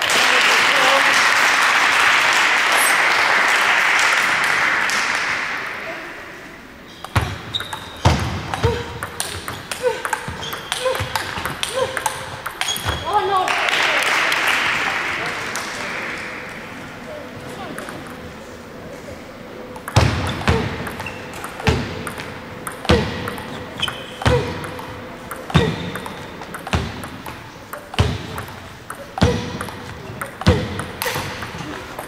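Table tennis ball struck by bats and bouncing on the table, with short sharp clicks in one rally and a long steady rally in the second half, hits coming about once a second. Twice, after a point ends, a spell of spectators' applause swells and fades.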